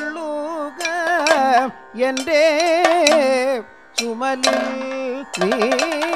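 Kathakali padam singing: a male voice sings long, heavily ornamented phrases that waver and glide in pitch, broken by two short pauses, with percussion strokes joining in the second half.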